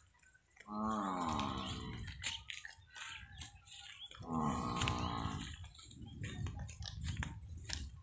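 Water buffalo calling twice, each call about a second long, with the pitch dropping slightly at the start, the first about a second in and the second about four seconds in. Between the calls come the soft crunching and tearing of grazing close by.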